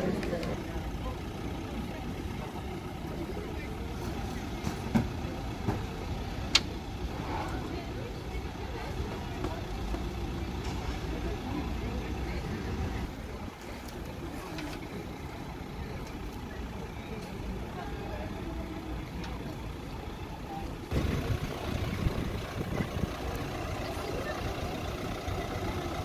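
Emergency vehicles' engines running at idle as a steady low rumble, with indistinct voices and a few sharp clicks and knocks.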